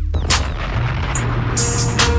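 An explosion or gunfire blast sound effect dropped into a hip-hop remix: a sudden wide burst of noise that slowly dies away over a continuing deep bass line.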